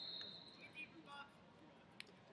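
Faint background of a large hall with distant voices. A high, steady whistle-like tone holds for about the first second, and a brief click comes at the end.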